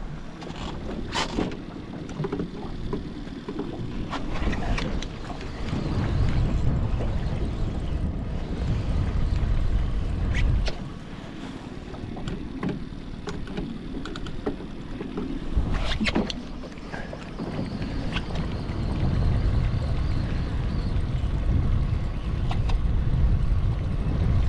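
Wind buffeting the microphone and water lapping against a small boat, in low gusty surges that swell and fade every few seconds, with a few scattered sharp clicks and knocks.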